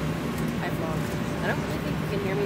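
Steady, loud cabin noise of an airliner in flight: engine and airflow drone heard from inside the cabin, with faint voices over it.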